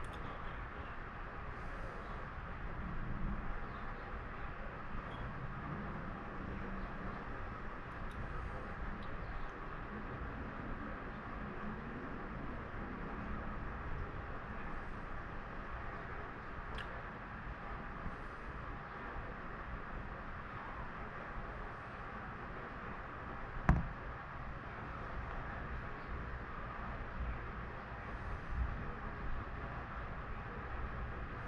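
Steady outdoor background noise with no thunder rumble, broken once about three-quarters of the way through by a single sharp click.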